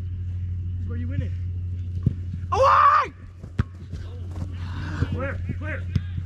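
Footballers shouting across an outdoor pitch, with one loud yell about two and a half seconds in and two sharp knocks, one just before the yell and one just after, over a steady low hum.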